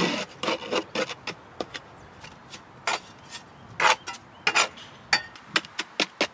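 Wooden stick scraping a gritty, sandy clay mix across a stone slab and into the gaps between stones. It makes a string of short rasping scrapes, the loudest at the very start and a cluster near the middle, with light taps of the stick against stone in between.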